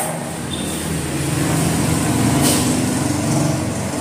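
A low engine drone, as of a motor vehicle going by, that swells towards the middle and eases off again.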